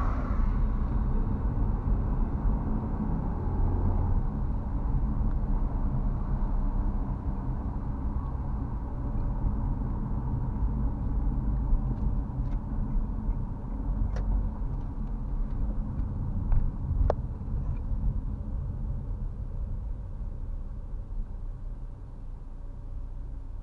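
Car driving on wet asphalt, heard from inside the cabin: a steady low engine and road rumble with tyre noise, and a few faint clicks. It grows a little quieter near the end as the car slows in traffic.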